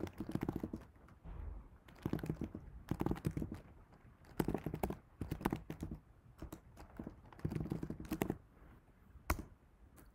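Typing on a computer keyboard in short bursts of keystrokes separated by brief pauses, ending with a single sharp keystroke near the end.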